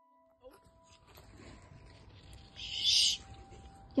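Steady music tones fade out and give way to the noisy background of a handheld phone recording outdoors, with one loud hiss lasting about half a second near three seconds in.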